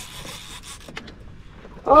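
Fishing reel's drag briefly giving line under a hooked catfish's pull, the drag set very light; then faint ticks, with a man's shout near the end.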